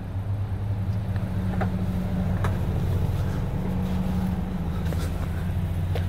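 2022 Mazda CX-5's power liftgate closing, with a few faint clicks, over the steady low hum of the SUV's idling engine.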